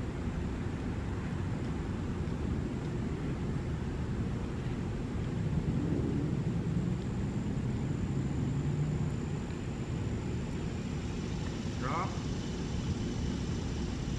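Steady low outdoor rumble of distant motor traffic, with an engine drone swelling in the middle and fading away. A man says one short word near the end.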